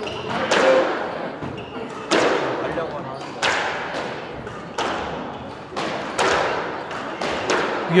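A squash rally. The ball is struck by rackets and slaps off the court walls, each hit ringing briefly in the enclosed court. The loudest hits come roughly every second and a half, with lighter knocks between them.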